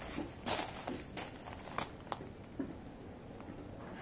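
A few soft, irregular footsteps and scuffs with handling noise from a phone carried close to a wooden wall.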